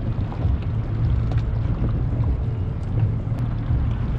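Steady low rumble on a small open motorboat: the engine running, with wind buffeting the microphone, and a few faint ticks of handling over it.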